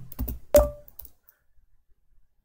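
A few keystrokes on a computer keyboard, the last and loudest about half a second in: the semicolon and Enter keys pressed to run a typed command.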